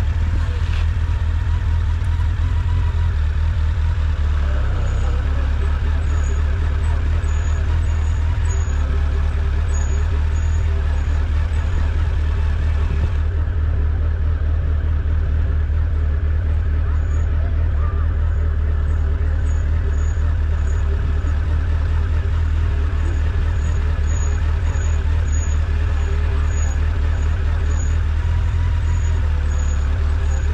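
Honda X4's inline-four engine running at low speed, a steady low rumble as the motorcycle rolls slowly along.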